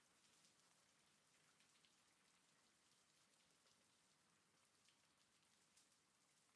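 Very faint recorded rain: a steady hiss with scattered ticks of single drops.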